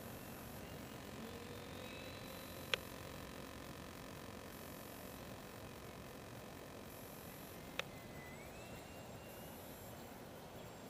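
Faint whine of a distant ParkZone P-47 RC plane's electric motor, its pitch shifting with the throttle and rising near the end, over a steady hiss. Two sharp clicks stand out, about three and eight seconds in.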